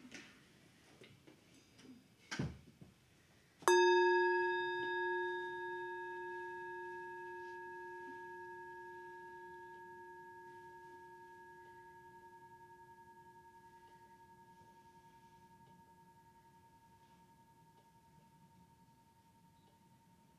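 A soft knock, then a Tibetan singing bowl struck once about four seconds in. It rings with several overlapping tones, one of them wavering, and fades slowly away, sounding the start of a minute of meditation.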